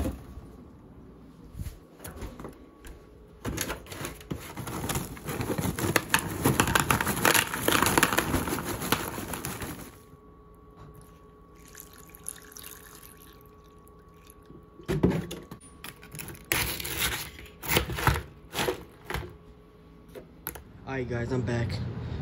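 Cereal and milk being poured into a plastic bowl, with a louder rustling pour in the first half and sharp knocks and clatters of handling in the second half.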